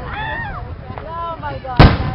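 A single loud, sharp firework bang about two seconds in, from an aerial firework display. Before it, people's voices rise and fall.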